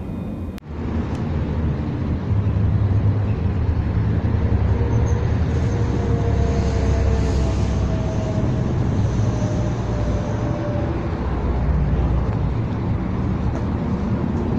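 Steady low rumble of outdoor traffic and car-park noise, which begins with a cut about half a second in.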